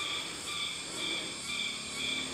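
Forest insects calling in a regular pulsed rhythm, about two high-pitched calls a second.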